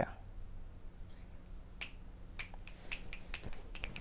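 Scattered finger snaps, short sharp clicks at irregular intervals that begin about two seconds in: snapping applause for a spoken-word poem that has just ended.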